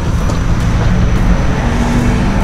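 Steady low rumble of outdoor background noise, even in level throughout.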